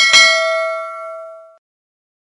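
A click, then a single bright bell ding that rings out and fades over about a second and a half. It is the notification-bell sound effect of a subscribe-button animation.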